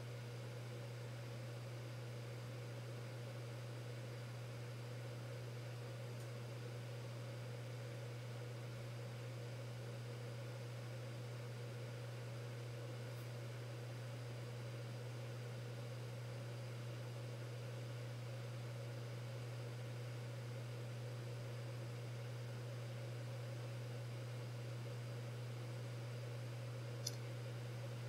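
Steady low hum with a faint even hiss underneath, unchanging throughout: background room tone with no distinct event.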